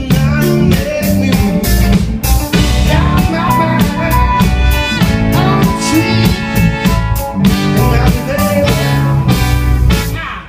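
Live soul band jamming instrumentally, with electric guitar and drum kit keeping a steady beat under trumpet and trombone lines.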